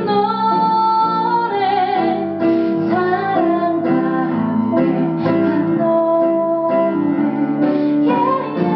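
Live band music: a woman singing a slow melody, holding long notes, over guitar and piano accompaniment.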